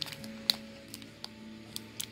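A few faint clicks and crinkles from the plastic wrapper of an alfajor being handled, the sharpest about half a second in, over a faint steady hum.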